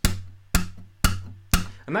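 Acoustic guitar strings pushed down so they click against the pickup in the sound hole, a percussive hi-hat imitation: four sharp clicks about half a second apart, each leaving a short low ring from the strings.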